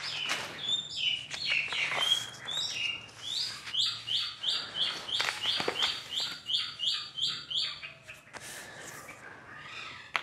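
A bird singing: a few varied chirps, then a quick run of about a dozen identical notes, about three a second, that stops near the end. Light paper rustling from the pattern paper being handled.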